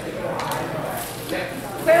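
Faint talk in a large hall with a reverberant room background, then a man's voice calling out a score ("Clear point…") near the end.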